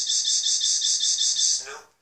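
High-pitched electronic trill from the djay DJ app, set off by touching the printed paper MIDI decks: a steady buzzing tone pulsing about seven times a second that starts abruptly and fades out just before two seconds.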